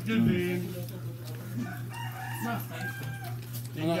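A rooster crowing in the background, one drawn-out crow in the middle, over a steady low hum.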